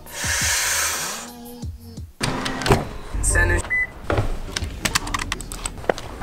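Fast-forward effect: about a second of hissing whoosh, then sped-up everyday sound, a rapid jumble of clicks and knocks.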